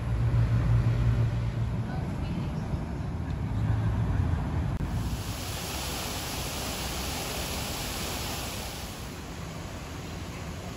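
Outdoor ambience: a steady low rumble, loudest in the first half, joined about halfway by a steady high hiss that fades out near the end.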